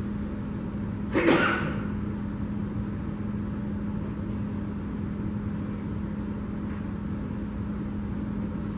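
Steady background hum and room noise with a constant low drone, and one short loud noise about a second in.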